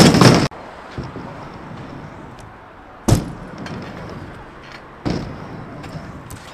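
A freestyle scooter clattering against a skatepark ramp three times, at the start, about three seconds in and about five seconds in: sharp bangs of the deck and wheels hitting the ramp and coping, with the wheels rolling on the ramp in between.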